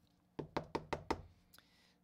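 A quick run of about seven light, sharp clicks and taps as a hard clear plastic trading-card holder is handled and turned over.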